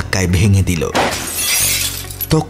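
Glass shattering sound effect, a light bulb being smashed, about a second in, over a low, steady background music drone.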